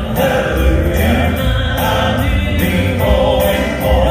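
Four-man Southern gospel quartet singing together into handheld microphones, amplified through a PA.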